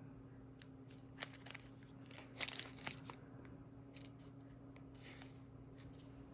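Foil wrapper of a Pokémon card booster pack crinkling and tearing in the hands. It goes in a few short crackles, with the loudest rustle lasting about half a second near the middle. A faint steady low hum runs underneath.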